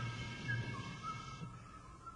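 A quiet passage of a 1964 jazz quintet recording, with held high notes that slide in pitch. Low notes sound under them and fade out about halfway through.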